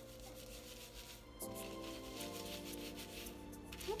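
Soft background music that changes chord about a second and a half in and again a moment later, with faint rubbing of fingers working shampoo through wet curly hair.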